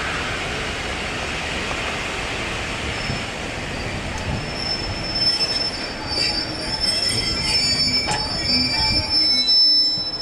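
Passenger coaches rolling slowly past with wheels and running gear rumbling, then a high, steady brake squeal that starts about three seconds in and grows louder as the train slows to a stop near the end.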